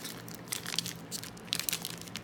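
Plastic wrapper of an Upper Deck hockey card pack crinkling and tearing as it is pulled open by hand, in two crackly spells about half a second in and again around a second and a half; the packs are tough to open.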